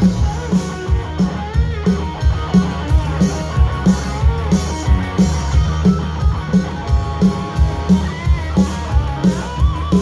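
Rock band playing live, an instrumental stretch with no vocals: electric guitars over bass and a steady drum beat, with a lead guitar bending notes now and then.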